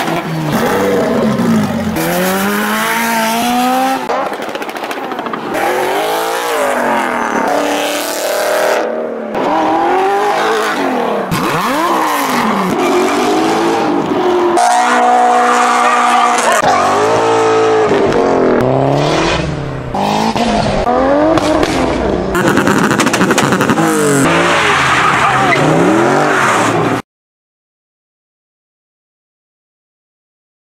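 A quick-cut montage of car engines and exhausts: revs rising and falling and cars accelerating and passing, joined by abrupt cuts. The sound stops suddenly near the end.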